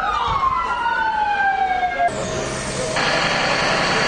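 Emergency vehicle siren wailing, its pitch sliding steadily down for about two seconds, then breaking off at a cut into a loud, steady rushing noise of the street scene.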